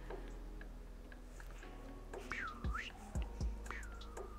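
Felt-tip marker scratching across paper as lines are inked. In the second half there are two drawn-out squeaks that dip and rise in pitch, with a few soft low thuds.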